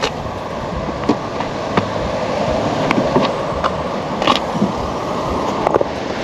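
A car's rear tailgate being unlatched and lifted open: a few light clicks and knocks, two close together near the end, over a steady rushing background noise.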